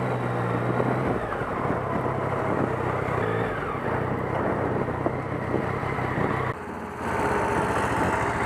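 Motorcycle engine running at low speed, a steady low hum under road and wind noise, with a brief drop in level about six and a half seconds in.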